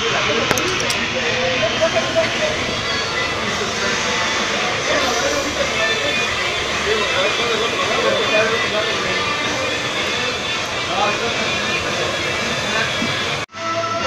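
Steady hiss-like background noise with faint, indistinct voices and music beneath it. The sound drops out briefly near the end.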